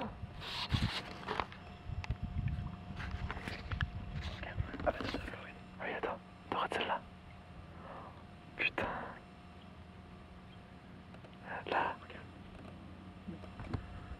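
Hushed, whispered voices in short bursts, over a faint steady low hum.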